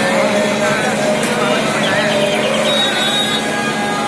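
Loud, steady street noise of a procession: a mix of voices and a motor vehicle running.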